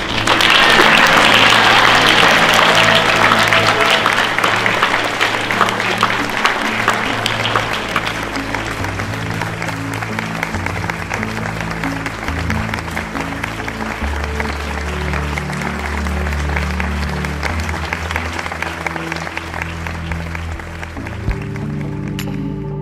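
Audience applauding, loudest at the start and thinning out gradually, over background music with sustained low notes.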